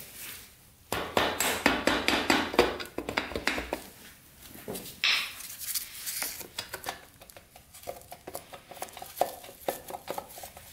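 Knocking and clinking on a Yamaha XT500's valve cover as a stuck cover is worked loose. A quick run of taps starts about a second in, with another burst about halfway through, and scattered metallic clinks and rattles follow.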